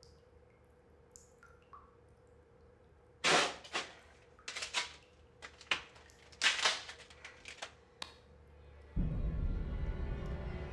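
Semi-automatic pistol being handled: a run of sharp metallic clicks and clacks for several seconds. Near the end, low droning music comes in.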